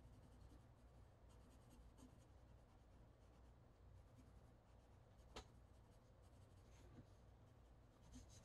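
Faint pencil strokes on paper, close to silence, with one small sharp click about five seconds in.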